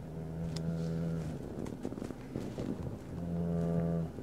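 A man's voice holding a long, level hum or drawn-out 'uhhh' on one steady pitch, then a second, shorter one near the end, with faint mouth clicks between.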